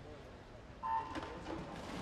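Electronic starting beep for a swimming race: one short steady tone about a second in, the loudest sound, followed by the splashes of swimmers diving in and a louder crowd.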